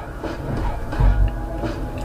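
A low rumble that swells to its loudest about a second in, under faint background music.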